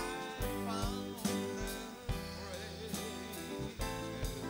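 Live small band playing a song on classical guitar, electric bass, keyboard and drum kit, with a singing voice wavering over a steady drum beat.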